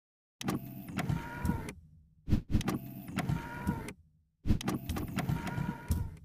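Animated-intro sound effect: three bursts of motorised whirring, each about a second and a half long and each starting with a sharp click, as the animated cubes move into place.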